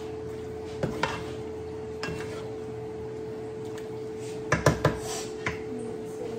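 Wooden spoon knocking and scraping against a nonstick skillet as food is stirred, with a quick cluster of louder knocks about four and a half seconds in. A steady hum runs underneath.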